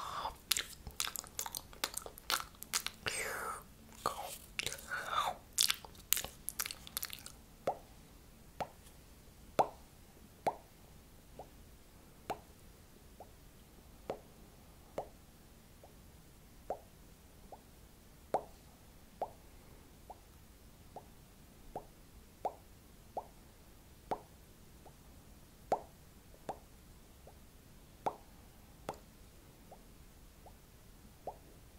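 Close-miked wet crunching and chewing-like mouth sounds for the first seven seconds or so, then a sparse run of single soft pops, each dropping slightly in pitch, about one a second.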